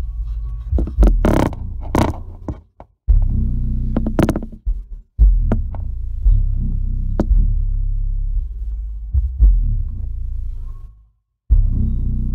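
Deep bass throbbing from a Dayton Audio 21-inch subwoofer driven by a QSC RMX 2450a amplifier in bridge mode, cutting out briefly a few times. Sharp clicks and knocks sound over the bass throughout.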